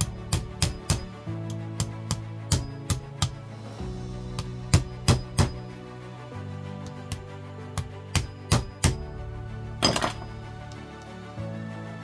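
Heavy hammer striking a thin scrap blade wedged in a slip joint knife on a steel anvil, cutting through the pins between the blades: about twenty sharp metal hits in short quick runs. Background music plays throughout.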